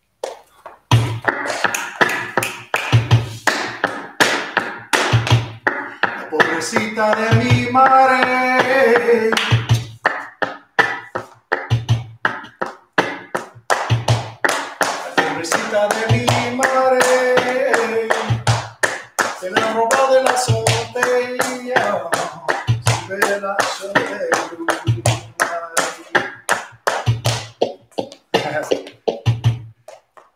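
Flamenco footwork in buleria rhythm: heeled dance shoes strike the wooden floor in quick runs of taps, with a heavier stamp roughly every two seconds. A man sings the verse over the footwork in stretches.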